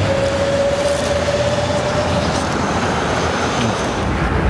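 Street traffic passing close by: a vehicle's steady whine over a rumble of road noise, the whine fading out about two seconds in.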